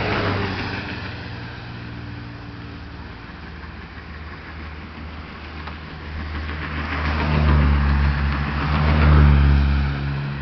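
Road traffic passing close by. One vehicle goes past right at the start, then another approaches with a low engine hum and passes, loudest near the end.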